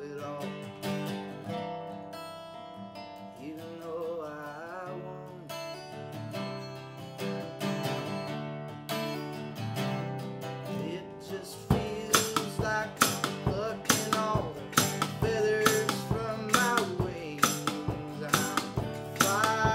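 Acoustic guitar strummed with a harmonica played in a neck rack, an instrumental stretch of a folk song. About twelve seconds in, the strumming turns harder and louder.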